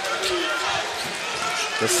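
Basketball being dribbled on a hardwood court, a series of short bounces over the steady background noise of an arena.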